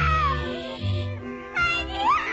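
A cartoon baby's voiced crying: one cry sliding down in pitch at the start and another rising near the end, over the cartoon's music score with a steady bass line.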